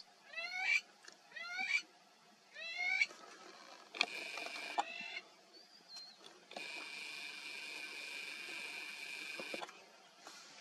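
A bird calling three times in the first three seconds, each call a quick rising, curving note. Later a steady high-pitched whine of unknown source lasts about three seconds, with a shorter one a couple of seconds before it.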